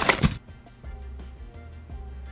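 A cardboard box being pulled open: one short, sharp noise at the very start, then soft background music.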